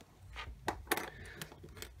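Several sharp clicks and taps of a small hard-plastic action-figure rifle accessory being handled, bunched in the first second.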